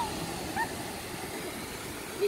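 Steady rushing noise of sea surf breaking on a sandy beach.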